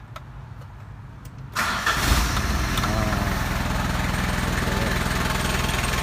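Kia K165 light truck's diesel engine being started: a short burst of cranking about a second and a half in, catching at once and settling into a steady idle.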